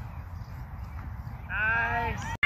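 Low outdoor field noise, then about one and a half seconds in a single high-pitched shout, held for about half a second and falling slightly in pitch.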